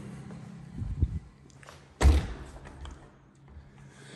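A door shut with a heavy thud about two seconds in, amid footsteps and light taps on a hardwood floor. A steady low motor hum from outdoor landscaping equipment fades out within the first second or so.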